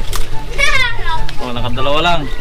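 Children's voices shouting and calling out in high pitches, one shout about half a second in and more voices near the end.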